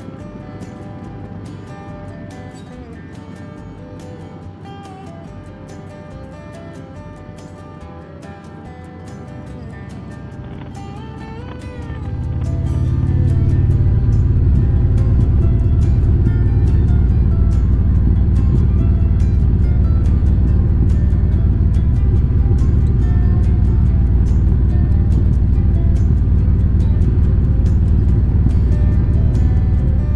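Background music plays, and about twelve seconds in a loud, low rumble of a motorcycle riding at speed, engine and wind together, comes in and stays far louder than the music.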